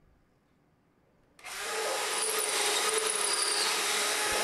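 Cordless drill boring a pilot hole for a plastic wall anchor into a wall. It starts suddenly about a second and a half in and runs steadily.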